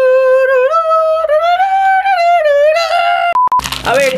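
A single high voice singing a long, held 'aah' note that steps up in pitch about a second in and wavers near the end, as a showy fanfare. It breaks off near the end for a short electronic beep.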